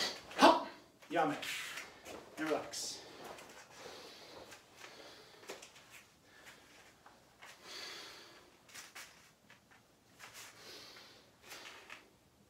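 A man's short, sharp vocal bursts in the first three seconds, one with each karate punch, then quieter breathy exhales as the drill winds down.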